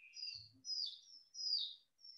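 A bird chirping faintly in the background: a quick run of short, high notes, each sliding down in pitch, about three a second.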